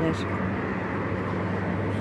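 A steady low mechanical hum over a general background noise.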